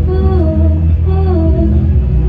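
A young woman singing into a microphone over a backing track, holding slow notes that dip and slide in pitch, with a steady deep bass underneath.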